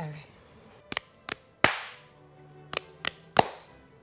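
Hands smacking: fists pounded into open palms in two quick sets of three, a rock-paper-scissors count for the rounds. The third smack of the first set is the loudest.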